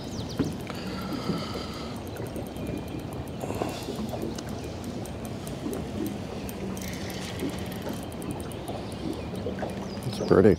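Steady wash of water against a small fishing boat's hull, with a faint low hum from the Garmin Force electric trolling motor holding the boat on spot-lock, and light ticking from the fishing reel while a hooked fish is being played.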